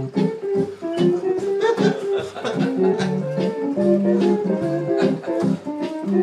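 Home electronic spinet organ played live: a bouncy bass line stepping under a melody, over a steady beat.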